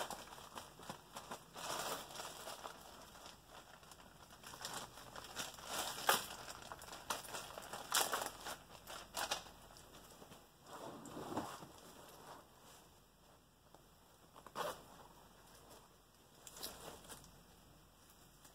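Fabric rustling and crinkling in irregular bursts as gloved hands rummage through the crammed pockets of a pair of military pants and pull out the small items and cables packed inside.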